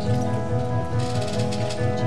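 Worship song played by a church band: sustained chords over a steady low beat of about four pulses a second, with a brief bright hiss about a second in.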